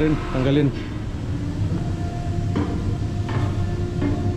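Steady low hum of a ship's engine-room ventilation blower. A higher steady tone joins about two seconds in, and two short knocks come later.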